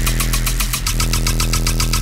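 Riddim dubstep synth bass holding one low note, chopped into rapid even pulses at about eleven a second.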